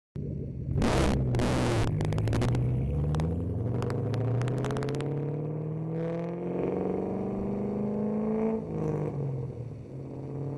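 Shelby GT500's supercharged V8 accelerating, its pitch climbing steadily through a long pull, then dropping at a gear change near the end and rising again. Two short bursts of harsh noise come about a second in.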